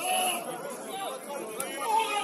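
Voices shouting and calling out across an outdoor football pitch during play, short calls without clear words.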